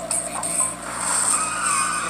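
Car tyres skidding with a sustained wavering squeal, from a film trailer's soundtrack played through a portable DVD player's small built-in speaker. The squeal builds about a second in.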